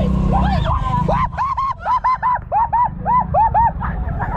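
A woman's high-pitched squeals: a quick run of short rising-and-falling cries, about five a second, starting about a second in and stopping shortly before the end.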